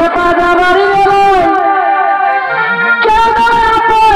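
Chhau dance music: a shrill reed-pipe melody with wavering, sliding notes over steady dhol and kettle-drum beats. The melody breaks off for about a second midway, then comes back.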